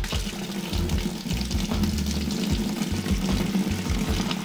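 Water from a chrome sink tap running steadily into a plastic tub, filling it with hot soapy water; the flow starts suddenly as the tap is opened.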